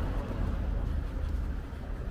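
Outdoor city-street background noise: a steady low rumble with a faint hiss over it, and no distinct single event.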